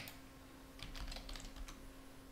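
A few faint keystrokes on a computer keyboard, bunched about a second in, as a terminal command is typed and entered.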